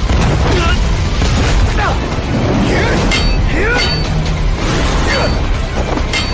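Animated fight sound effects: a continuous deep rumble of magical blasts, with sharp metallic sword clashes that ring, about three seconds in, again just after, and once more past five seconds.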